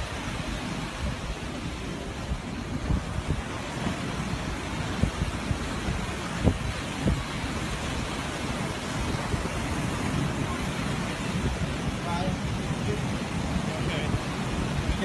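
Wind buffeting a phone microphone: a steady rushing noise with uneven low rumbles and a few sharper bumps around the middle. Faint, indistinct voices lie underneath.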